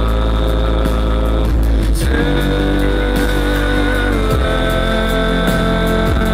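Live band playing an instrumental passage with no vocals: held chords over a steady, heavy bass. The chord changes about two seconds in and again a little after four seconds.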